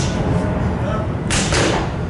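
Boxing-glove punches landing on a trainer's pads, with one sharp smack just past halfway, over a steady low rumble.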